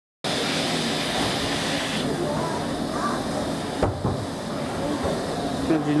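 A GWR Castle class 4-6-0 steam locomotive standing with steam hissing. The hiss drops away about two seconds in, and there is one sharp knock just before four seconds.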